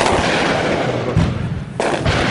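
Two loud shots in a firefight, about two seconds apart, each sudden crack trailing a long rolling echo.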